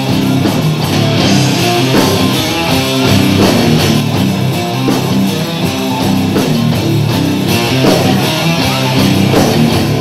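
Live rock band playing loud and steady, with electric guitars over bass and drums.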